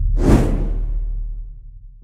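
A whoosh sound effect from an animated intro sting. It starts about a quarter second in, sweeps high and fades over about a second, over a deep rumble that dies away toward the end.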